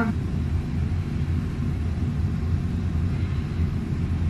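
Steady low rumble of kitchen background noise, even in level with no distinct events.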